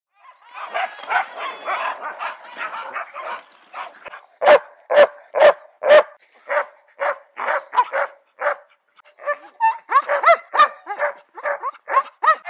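Sled dogs in harness barking, at first several overlapping at once, then four loud sharp barks about half a second apart. More barks and yips with rising and falling pitch follow.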